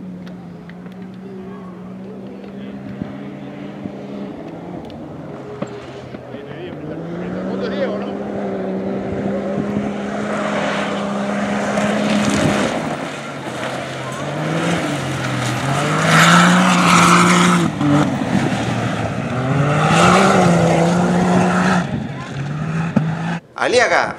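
Rally side-by-side UTV engine driven hard on a dirt stage. The note holds steady, then climbs and drops again and again as it revs through the gears. It grows louder as the car comes close, with a rush of tyres on loose dirt.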